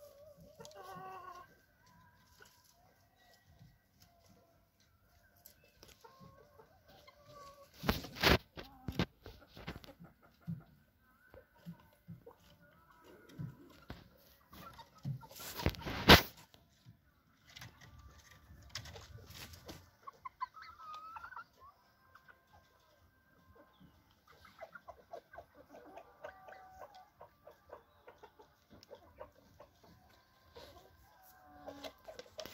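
Chickens clucking softly and intermittently, with one rising call about twenty seconds in. Loud rustling knocks come in clusters about eight and sixteen seconds in.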